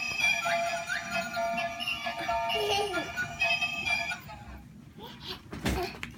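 A light-up pink dolphin bubble gun toy playing its tinny electronic tune, which cuts off about four seconds in. A few soft thumps follow near the end.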